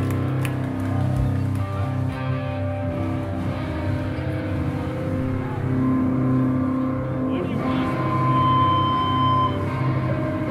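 A live hardcore band's distorted electric guitars and bass holding a sustained, droning chord through the amplifiers with no drums, and a high steady feedback whine appearing near the end.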